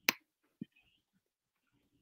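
A single sharp click, then a faint short thump about half a second later.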